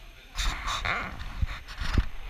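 Handling noise from a GoPro being picked up and moved: rustling and rubbing against the microphone with low knocks, starting about half a second in.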